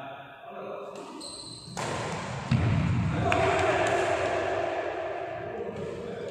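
Badminton doubles rally in a large hall: racket hits on the shuttlecock and footfalls on the wooden court, with players' voices. A loud hit comes about halfway through.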